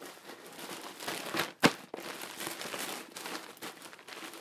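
Crinkling and rustling of packing stuffing being handled, with one sharp click about one and a half seconds in.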